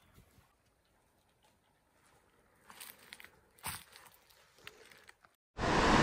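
A few faint clicks and rustles as hands work with the fish and fishing tackle. Near the end a sudden, loud, steady rushing noise cuts in.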